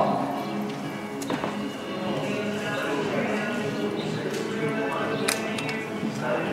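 Background music playing through a large, echoing indoor arena, with voices talking low underneath and a couple of brief knocks.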